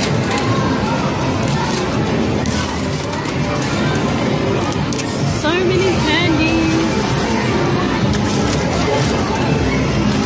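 Loud arcade din: machine music and electronic sound effects over background voices. A quick run of rising electronic chirps comes about five and a half seconds in.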